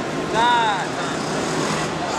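A single high-pitched shout from a person's voice, rising then falling in pitch for about half a second, near the start, over steady background noise from the gym.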